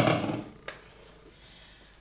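Kitchenware being handled: a sudden clunk that dies away within about half a second, then a single sharp click a moment later.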